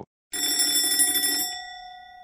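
Doorbell sound effect: a bell rings for about a second, starting a moment in, then its tone fades away.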